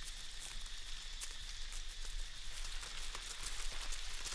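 Many Christmas Island red crabs scuttling over dry leaf litter and stones: a steady, fairly faint patter of countless tiny clicks and rustles, like light rain.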